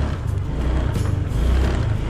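Honda automatic scooter engine running as it moves off at low speed, mixed with steady rushing noise and background music with heavy bass notes.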